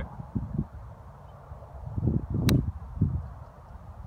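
A golf iron strikes a ball once on a one-handed chip shot: a single sharp click about two and a half seconds in, inside a short stretch of low rumble.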